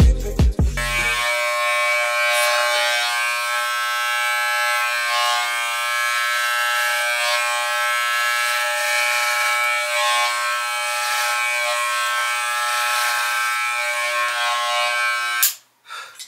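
Corded electric hair clippers buzzing steadily as they are run through short hair. The buzz starts about a second in and stops abruptly just before the end.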